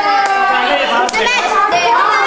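Several children talking and calling out over one another, excited high voices overlapping.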